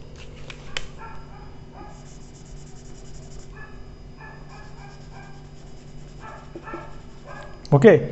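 Dry-erase marker on a whiteboard: a few sharp taps, then repeated short squeaks and rapid scratchy strokes as it shades in a drawing.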